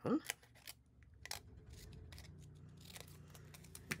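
Scissors snipping through a paper tab sticker to trim it narrower: a few separate, sharp cuts spaced out over several seconds.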